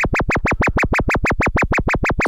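Doepfer A111-1 VCO's sine wave, its pitch swept deeply up and down about seven times a second by an LFO sine wave patched into the exponential FM (CV) input: a fast, wide, even warble, heard through an A120 low-pass filter with no resonance.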